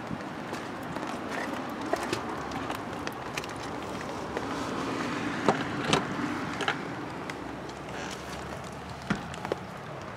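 Rain falling on an umbrella held overhead: a steady hiss with scattered ticks of single drops striking the fabric.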